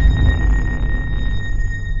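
Outro sound effect: a deep rumble under a steady, high, ringing tone, the sustained tail of a whoosh-and-hit.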